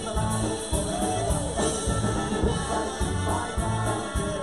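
Live polka band playing a traditional Chicago-style polka, with a steady bass beat under the melody.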